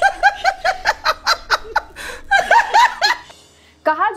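A person laughing in a quick run of short, high-pitched bursts, about five a second with breathy catches between them, stopping about three seconds in.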